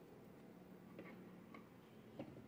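Near silence: quiet room tone with two faint clicks about halfway through, about half a second apart.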